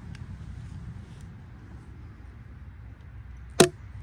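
A manual staple gun fires once with a single sharp snap about three and a half seconds in, driving a staple through carpet into a wooden trailer runner. Before it there are only a few faint clicks of the carpet and board being handled.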